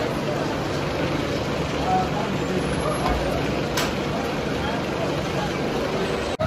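Spinning roller coaster car running along a steel track, a steady rumbling noise, with park visitors' voices mixed in and one sharp click about four seconds in.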